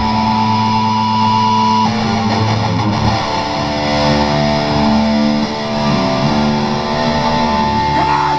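A heavy metal band playing live, with distorted electric guitars to the fore; a high note is held for about the first two seconds before the notes start changing.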